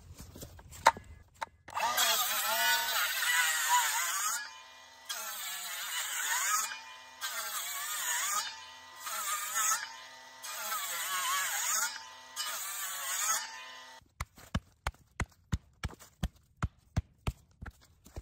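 Milwaukee cordless circular saw cutting into a tree stump in five or six short runs with brief pauses between them, its motor pitch dipping and recovering as the blade bites into the wood. Near the end, a quick series of sharp knocks, about three a second, as the cut blocks of stump are knocked loose with a sledgehammer.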